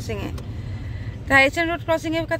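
Steady low rumble of a car running, heard from inside the cabin. A woman's voice starts talking over it a little past halfway.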